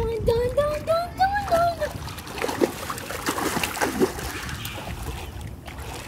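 A child's voice holds a wavering note that climbs in pitch over the first two seconds, then pool water splashes and churns as the child swims with arm strokes.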